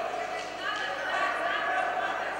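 Men's voices shouting and calling out in a large sports hall.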